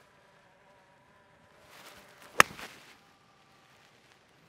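A golf shot with a 56-degree wedge on a three-quarter swing: a short swish of the club building up, then one sharp click as the clubface strikes the ball, about two and a half seconds in.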